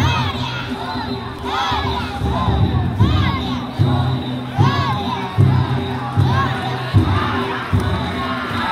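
Children and men pulling a danjiri float's rope shouting a rhythmic festival chant, the shouts coming about every second and a half, over a noisy festival crowd and the danjiri's drums and gongs.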